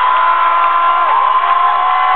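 Concert audience cheering and screaming, many high voices holding long shrieks that fall away at the end.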